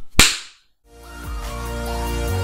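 A single sharp whip-like snap sound effect that fades within half a second. After a short silence, electronic intro music with sustained tones and a bass line fades in about a second in.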